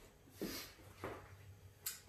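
Faint sounds of a person getting up off a rubber gym floor: two soft noises about half a second and a second in, and a short click near the end.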